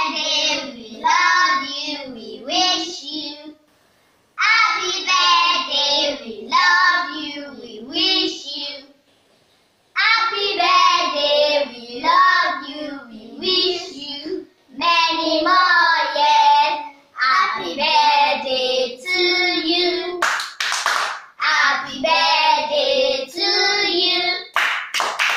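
Children singing a birthday song in phrases, with two short pauses in the singing and a few hand claps about twenty seconds in.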